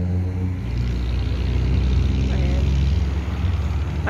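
Road traffic on a multi-lane city street: a steady low rumble of vehicle engines. A louder passing engine's hum drops away about half a second in.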